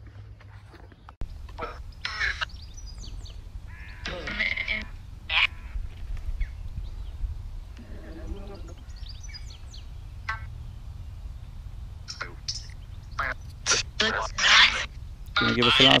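Necrophonic ghost-box app on a phone playing choppy, broken fragments of voice-like sound through the phone's speaker. The fragments grow louder and denser near the end, over a steady low rumble.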